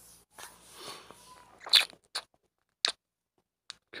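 Close-miked mouth sounds: a soft breathy rustle, then four short crisp lip clicks a little under a second apart, the first the loudest.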